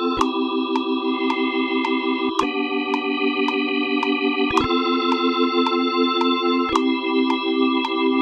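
GarageBand's Hammond organ emulation (Soul Organ preset) playing back a recorded part: held chords that change about every two seconds, over a steady beat of short clicks.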